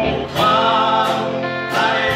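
Live gospel worship music: a singer holding long notes over a band of drums, bass guitar and acoustic guitar, with a short break and a new sung phrase about half a second in.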